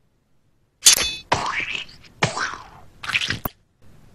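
Cartoon sound effects: starting about a second in, four sudden hits roughly a second apart, some with a quick rise or fall in pitch.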